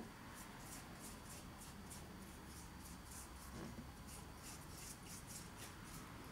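Bristle paintbrush stroking quickly back and forth over a wooden model tunnel portal, faint repeated brushing about three or four strokes a second, as a steel wool and vinegar solution is painted on to age the wood.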